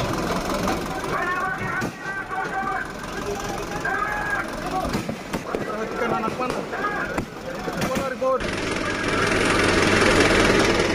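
Many people shouting at once, with a few sharp cracks among the voices. About eight seconds in, the sound changes abruptly to a louder, steady engine noise from an armoured police vehicle, with voices still over it.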